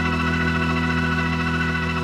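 Hammond organ sound from a software organ played on a keyboard, holding one steady chord with a slight waver in its upper notes.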